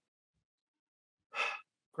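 Near silence, then about a second and a half in, a man's short, audible breath in just before he starts to answer.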